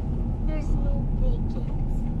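Car driving slowly and turning, heard from inside the cabin: a steady low rumble of engine and tyres. A faint, short voice-like sound comes about half a second in.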